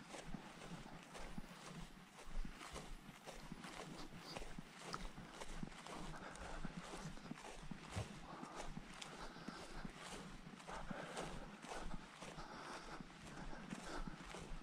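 Footsteps of someone walking through long meadow grass, a steady uneven run of soft steps and grass swishing.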